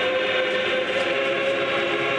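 Russian Orthodox church choir holding a long sustained chord of several voices.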